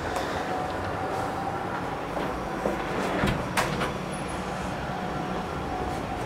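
Handling noise from a hand-held camera being carried and moved about: a steady rumble with scattered small knocks and one sharp click a little past halfway.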